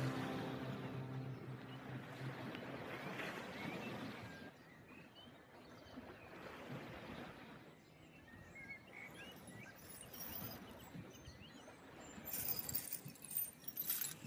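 Faint ambient soundtrack: a held musical chord fades out in the first second, leaving a quiet noisy wash with a few faint high chirps in the middle. A brighter crackle comes in over the last two seconds.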